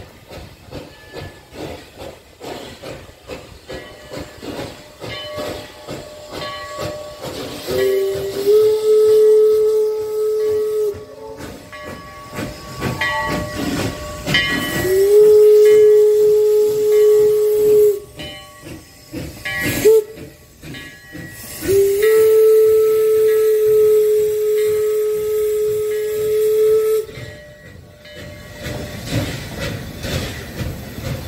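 A 4-4-0 steam locomotive chuffing in a steady beat with hissing steam, then blowing its steam whistle: three long blasts with a short toot between the last two, each one sliding up slightly in pitch as it opens. Near the end the passenger cars roll by with wheel clatter.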